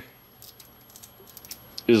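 Faint, irregular light clicks and rattles from the loose metal end cap of an overheated cartridge fuse being worked by hand.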